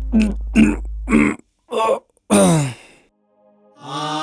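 A person's voice making four short, strained vocal sounds and then a longer moan that falls in pitch, in distress. A low background music drone dies away about a second in, and music comes back near the end.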